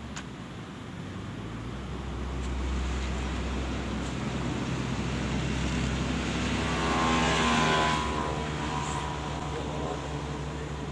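An engine passing by, its hum growing louder to a peak about seven to eight seconds in and then easing off.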